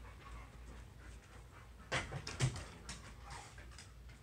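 Dog panting and huffing, with a few louder, sharp breaths about two seconds in.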